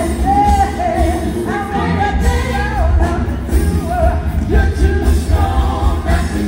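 Live band playing with a heavy bass line under a woman's lead voice singing long, wavering melodic lines.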